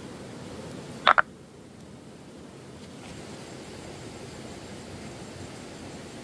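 Steady rush of a shallow rocky stream, with a loud, sharp double chirp about a second in.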